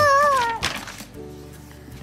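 A high, meow-like cry that rises and falls in pitch and ends about half a second in, followed by the rustle of a picture-book page being turned.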